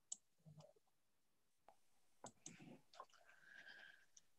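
Near silence broken by a few faint clicks at a computer desk: a couple near the start and a small cluster a little past the middle, with a faint short steady tone near the end.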